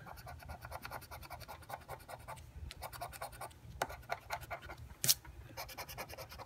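Scratching the coating off an instant lottery scratch ticket with a flat metal tool held in the fingers: rapid short strokes, several a second, with brief pauses and one sharper scrape about five seconds in.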